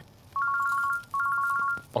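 Mobile phone ringing with an electronic ringtone: a two-tone trill, sounding in two short bursts close together.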